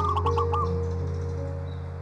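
Soft piano music holding a sustained low note, with a bird giving a short run of quick calls over it in the first half-second or so.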